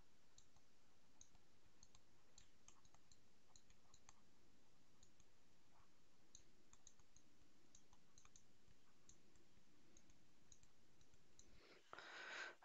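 Near silence with a low hiss and many faint, irregular clicks and taps of a stylus writing on a tablet.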